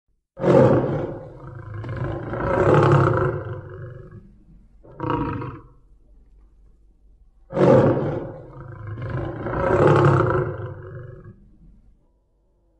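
Tiger roaring: a loud roar that swells twice and is followed by a shorter call. The same sequence comes again, almost note for note, about seven seconds later.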